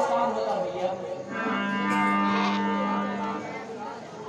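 A single long held note, steady in pitch, lasting about two seconds and then fading, after a man's voice stops.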